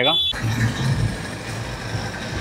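Super Dragon Train, a small fairground dragon coaster, running on its track: a low, uneven rumble over steady noise.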